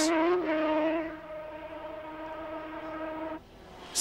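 250cc two-stroke racing motorcycle engine running flat out with a steady buzzing note, fading after about a second as the bike pulls away, then cutting off suddenly near the end.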